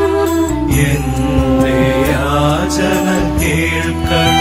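Devotional hymn: a singing voice over steady held instrumental chords, sung in a slow, chant-like way.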